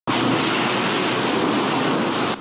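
High-pressure water jet from a car-wash spray wand blasting against a car, a loud steady hiss.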